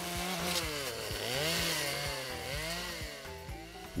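Petrol chainsaw carving into a wooden sculpture. Its engine pitch dips, then rises and falls again as the throttle is worked, with the hiss of the chain cutting wood.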